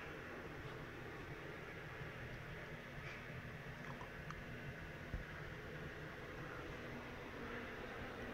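Quiet room tone: a faint, steady low hum, with one soft bump about five seconds in.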